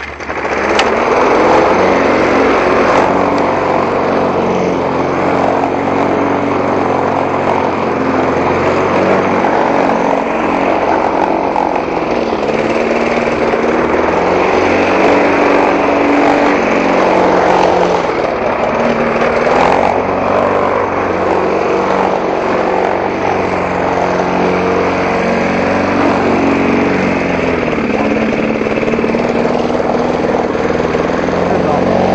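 Walk-behind gas lawn mower engine coming on suddenly at the start, then running steadily and loudly while the mower is pushed through grass.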